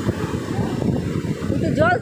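Surf breaking on a sandy beach, heard as a low, rough, uneven rumble with wind on the microphone.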